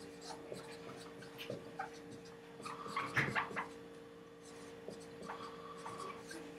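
Dry-erase marker writing on a whiteboard: a run of short, faint strokes as a word is written out, busiest about halfway through, over a faint steady hum.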